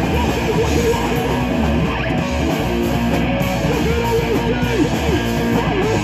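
Live rock band playing loud and steady, electric guitars through amplifiers over drums, with repeated bent guitar notes.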